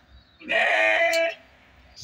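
A single bleat from a goat or sheep in the pen, one call lasting about a second.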